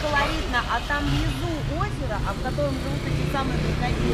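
Street sounds: a vehicle engine running low and steady from about a second in, under indistinct voices.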